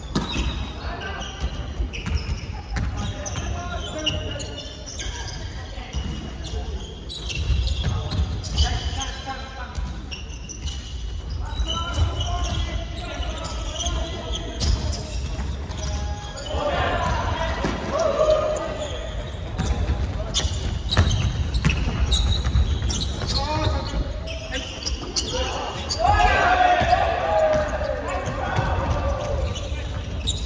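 Balls bouncing and thudding on a hardwood gym floor, echoing around a large sports hall, mixed with players' voices and shouts that get louder about halfway through and again near the end.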